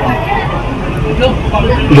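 Steady low rumbling background noise with faint voices of other people, in a short pause in a man's speech.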